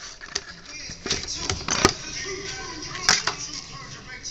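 Clear plastic blister packaging being pulled out and handled, crinkling, with three sharp clicks and pops, about a second apart. Faint music plays underneath.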